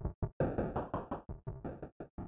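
Live-coded electronic music from TidalCycles: a fast, uneven stream of short synthesized noise hits, about six or seven a second, each decaying quickly, with a deep low end.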